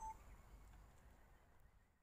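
Near silence: faint background fading away, with one short high chirp at the very start.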